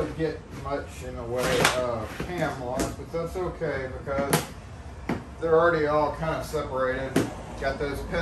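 A man's voice talking while clear plastic storage bins and their lids are handled on a table, with about four sharp plastic clacks. The strongest clack, about halfway through, is a lid going onto a bin.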